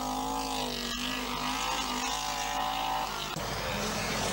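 Audi 80 Quattro rally car's engine running hard at steady high revs through a gravel corner, its note wavering slightly. A little over three seconds in, the steady note breaks off and a rougher engine sound follows.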